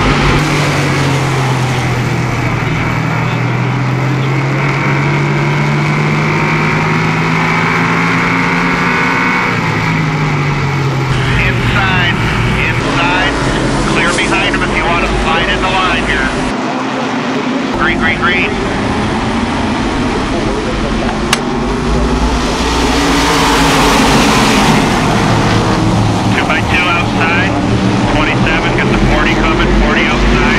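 An SK Modified's carbureted V8 race engine heard from on board, its pitch rising and falling through the corners for the first ten seconds or so. After that comes trackside sound of the modifieds racing past, swelling about two-thirds of the way through, with voices over it.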